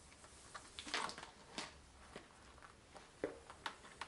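Faint rustling and scraping as an elastic-edged helmet face mask with goggles is stretched open and pulled over an open-face half helmet. A handful of short light clicks and scrapes, the busiest stretch about a second in.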